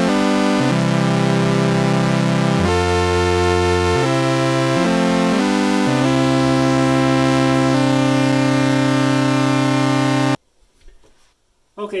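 Moog Grandmother analog synthesizer playing sustained three-note chords in three-voice polyphony, its pitches set by a MidiVolts Desktop MIDI-to-CV controller, with all voices through one envelope and VCA. The chords change every second or two and the sound stops suddenly about ten seconds in.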